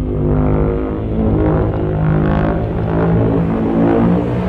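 Dark orchestral film score: low held brass-like notes that step in pitch every second or so, over a deep rumble.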